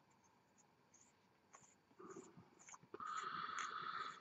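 Faint metal-on-metal scraping of a firing button's threads being screwed onto a copper mechanical vape mod tube, with a few small clicks. It starts about halfway through and is loudest in the last second.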